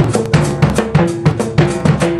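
Acoustic drum kit played in a fast solo pattern: rapid strokes around pitched toms, about seven or eight a second, with bass drum and cymbals ringing over them.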